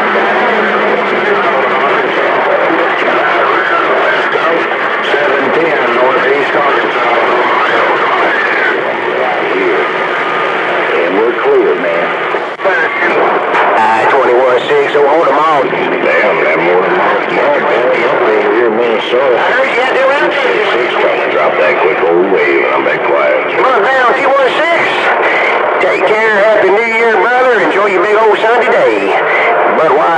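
CB radio receiving distant AM stations on channel 28: garbled, narrow-band voices through the radio's speaker, with a noisy hiss under them.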